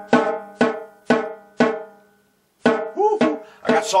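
Single strokes on a snare drum, about two a second, each ringing out with a pitched tone. The strokes ease off in loudness, pause for about a second just past the middle, then start again.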